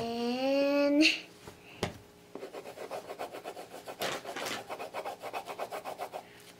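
Wax crayon scribbling on paper in quick back-and-forth strokes as a child colours in, starting about two seconds in. In the first second a child's voice holds a single, slightly rising note.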